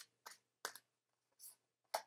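Tarot cards being handled as a card is drawn from the deck: a handful of faint, short clicks and flicks at irregular intervals.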